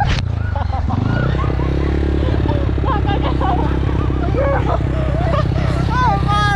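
Motorcycle engine running under way, rising in pitch over the first second and then holding a steady speed, with voices calling out over it.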